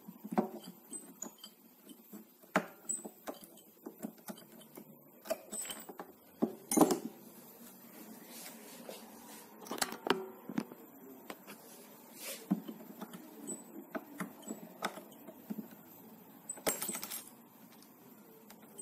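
Irregular metallic clicks, taps and scrapes of a small tool working the truss-rod nut at the neck heel of a Fender Stratocaster, to take the nut off. The loudest knocks come about seven and ten seconds in, with a quick run of clicks near the end.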